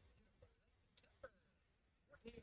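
Near silence broken by a few faint, short clicks, the clearest just past a second in.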